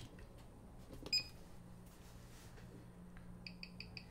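Timegrapher with a watch on it: a single short electronic beep about a second in, then near the end a fast, even ticking through its speaker, about six ticks a second, as it picks up the beat of an ETA 2472 movement, which runs at 18,000 beats per hour.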